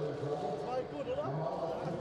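Faint, indistinct voices in the background, with no clear words.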